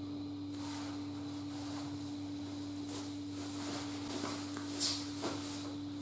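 A steady low electrical hum with a few faint rustles and soft clicks of a person shifting on a bed and handling clothing.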